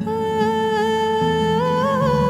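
Background music: a wordless hummed melody held on long notes over soft sustained chords. The melody lifts in pitch near the end.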